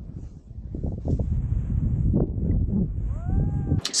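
Wind buffeting a camera microphone while a snowboard rides through deep powder: a heavy low rumble with scattered knocks and a faint hiss of snow. Near the end, a short call rises and falls in pitch.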